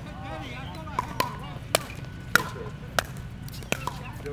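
Doubles pickleball rally: paddles hitting the hollow plastic ball, about six sharp pops spaced half a second to a second apart.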